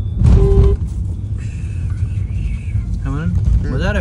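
A short car horn honk about half a second in, over the steady low rumble of a car on the road, heard from inside the cabin.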